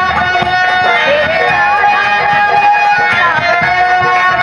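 Live Indian folk stage music: a bright plucked or keyed melody instrument playing a gliding tune over steady hand-drum strokes.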